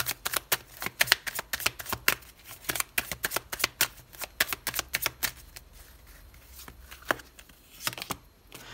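A tarot deck being shuffled by hand: a quick run of card snaps and flicks for about five seconds, then a quieter stretch with a single snap near the end.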